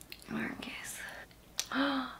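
A woman's soft whispering voice: a few breathy, hissy syllables, with a short voiced murmur near the end.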